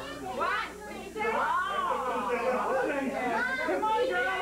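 Several people chatting at once, children's voices among them, with no single clear speaker.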